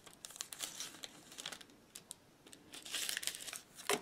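Paper and cardboard packaging crinkling and rustling as it is handled: a spell of crackles about half a second in, and a busier one near the end.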